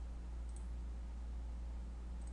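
Quiet room tone with a steady low hum, and a single faint computer-mouse click about half a second in.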